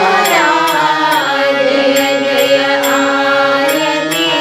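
A woman singing a devotional Ram chant (bhajan) over a steady held instrumental drone. A short, bright metallic click keeps time about twice a second.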